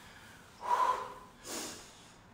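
A woman breathing hard from exercise: two short, noisy breaths about a second apart, the second higher and hissier.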